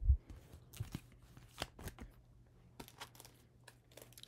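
A soft thump, then scattered faint crinkles and taps: clear plastic chart packs and paper being handled and set down.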